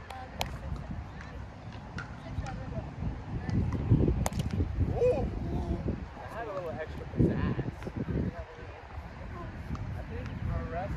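Players' voices calling out across an open field during a roundnet (Spikeball) rally, with a sharp smack of the ball being hit about half a second in and another about four seconds in.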